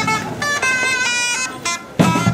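Medieval wind instrument with finger holes, played as a solo melody line of short notes stepping quickly up and down, with a bright, horn-like tone. The drums largely drop out here.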